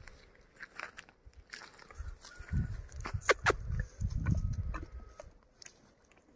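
A horse eating feed from a bucket: chewing and crunching with scattered clicks, two sharp knocks a little past the middle, and low rumbling bursts.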